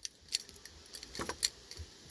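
A few light, sharp metallic clicks and jingles, scattered unevenly with a short cluster just over a second in.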